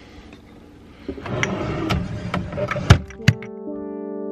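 Spice jars and containers being handled on a kitchen counter: shuffling and clinking, with two sharp knocks near the end. Background keyboard music begins just after the knocks.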